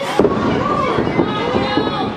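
A wrestler's body crashing onto the wrestling ring mat in one sharp impact at the start, followed by spectators' voices shouting and calling out.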